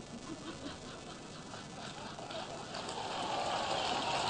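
Audience applause with faint crowd voices, the clapping growing louder and fuller about three seconds in.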